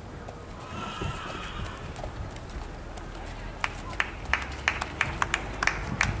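Horse's hoofbeats at a trot on arena footing: sharp, even strikes about three a second, starting a little past the middle. A faint voice is heard earlier.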